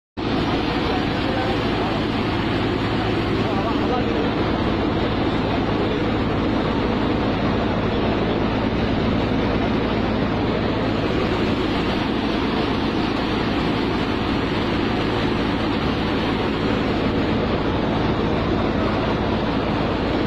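Threshing machine running steadily: a continuous loud mechanical roar with a steady low hum. It is being run as a makeshift air blower. Crowd voices murmur underneath.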